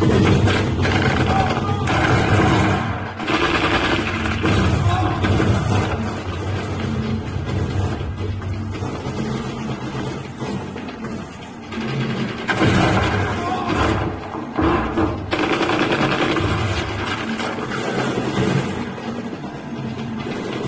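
Action-film soundtrack: loud background music mixed with gunfire.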